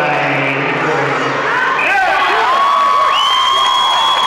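Rink spectators cheering and shouting over a goal in a youth ice hockey game. A man's voice is heard in the first two seconds, and one long high-pitched note is held through the last second.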